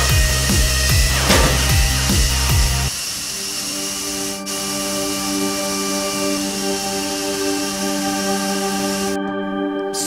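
Electronic background music with a fast pulsing bass, about four beats a second, that drops out about three seconds in, leaving held synth chords over a steady hiss.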